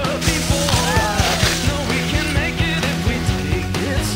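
Background rock music with a steady drum beat, about four hits a second, over bass and guitar.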